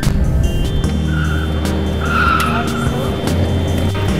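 A car driving slowly, heard from inside the cabin as a steady low engine and road rumble. Two brief high squeals come near the middle.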